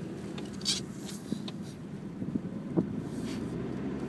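Engine of a manual Nissan car running steadily, heard from inside the cabin, with a few faint clicks.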